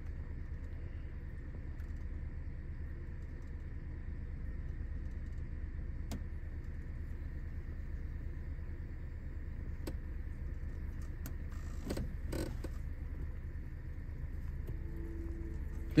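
Steady low hum inside a car cabin, with a few faint clicks about six, ten and twelve seconds in as the buttons of the 2005 Toyota Camry's factory CD player are pressed while it loads a disc.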